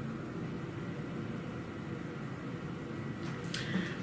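Steady, quiet indoor room tone with a faint low hum, and a brief soft rustle near the end.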